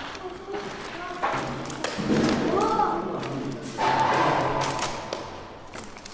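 Thuds and knocks, likely the group's footsteps, with indistinct voices.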